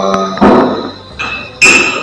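A few struck metallic tones, like a small bell: a dull knock about half a second in, a faint high tone about a second in, and a bright, loud strike near the end that rings briefly.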